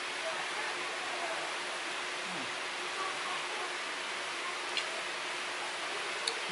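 Steady, even background hiss of room noise, with a light click near the end.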